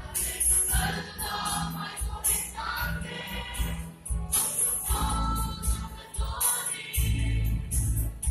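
A mixed choir of young men and women singing a Mizo gospel song in harmony, with a steady low accompaniment and a jingling percussion keeping time.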